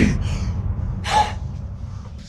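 A single sharp gasp, a quick intake of breath about a second in, over a low steady hum.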